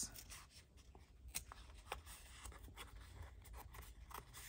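Faint scratchy rustling of a card-paper scrapbook pocket being pressed and worked between fingers, with a few soft clicks, as its perforated centre is pushed loose.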